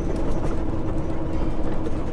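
Semi truck's diesel engine and road noise heard from inside the cab while driving, a steady rumble with a constant hum.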